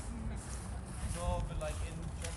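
Street ambience: a steady low rumble with brief, indistinct voices of passers-by a little over a second in.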